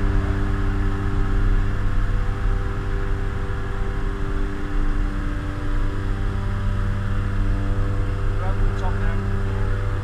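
Aircraft engines running with a steady, unchanging hum, heard from inside the cabin of a skydiving jump plane in flight. A faint voice comes in briefly near the end.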